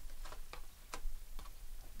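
Light clicks and snaps of tarot cards as the deck is thumbed through and a card is pulled from it, about five short clicks spread unevenly over two seconds.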